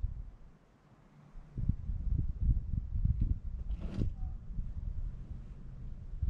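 Wind buffeting the microphone in irregular gusts that set in about a second and a half in, with a brief rustle about four seconds in.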